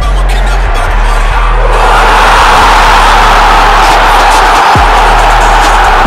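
Hip-hop backing music with a deep bass beat. About two seconds in, a loud, even rushing noise joins it and stays on as the loudest sound.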